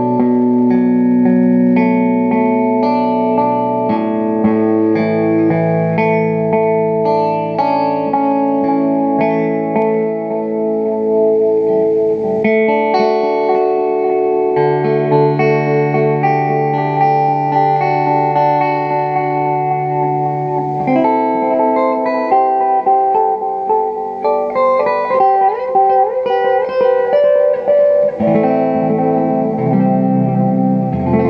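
Electric guitar chords and notes played through an analog delay pedal set to its longest delay time, the repeats overlapping and ringing on, heard through a Fender Supersonic tube combo amp. The playing gets busier, with quicker picked notes, in the last third.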